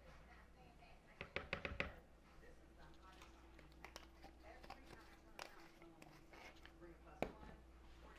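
Mostly quiet kitchen handling: a quick run of small clicks and taps about a second in, then a couple of single clicks later, from spice jars and a measuring spoon being handled over a mixing bowl.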